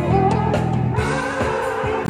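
Live band playing with a lead vocal sung over drums and electric guitar; the singer's voice slides between notes over a steady beat.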